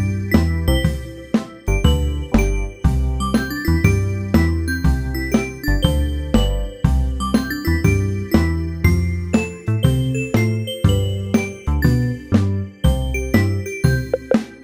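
Instrumental children's song music with no singing: a steady beat of short, ringing notes over a bass line.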